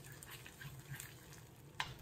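Faint sizzling of salted egg yolk frying in a little oil in a wok, with light scrapes and taps of a metal ladle stirring it, one slightly louder tick near the end.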